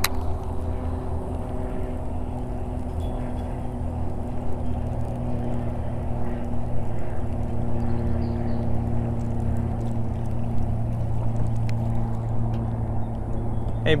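A steady low motor hum whose pitch never changes, over an even rushing noise.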